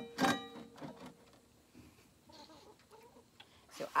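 Chickens clucking: a short call just after the start, then soft, faint clucks.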